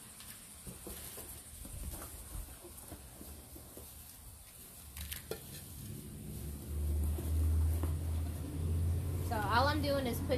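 Hand trowel scooping potting soil and tipping it into a clay pot, with faint scrapes and soft soil patter. A low rumble comes in about two-thirds of the way through and is the loudest sound, and a woman's voice starts near the end.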